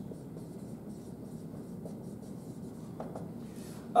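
Dry-erase marker writing on a whiteboard, quiet strokes against a low room hum.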